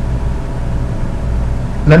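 Steady low hum with a faint even hiss: constant room background noise, with no distinct events.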